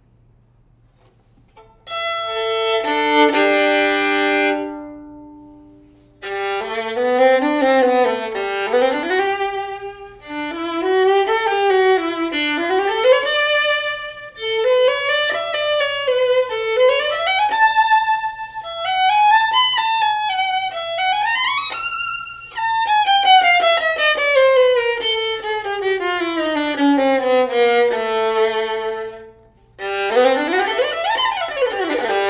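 Ming Jiang Zhu 907 violin played solo with the bow. After a short pause it sounds held notes that ring and fade, then a flowing, slurred melody with slides between notes. It closes with a long descending line and stops just before the end.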